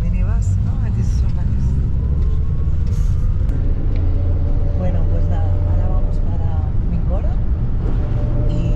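Steady low rumble of a moving minibus, engine and road noise heard from inside the passenger cabin, with faint talk from passengers over it.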